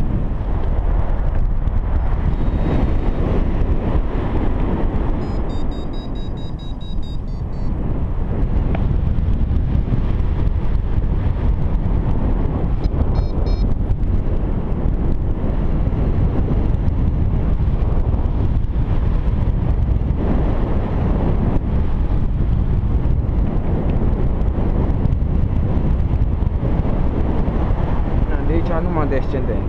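Airflow buffeting the microphone of a camera on a flying paraglider's harness: a steady, loud rush of wind noise, heaviest in the low end. Around six seconds in, and briefly again near thirteen seconds, short runs of high electronic beeps sound through it.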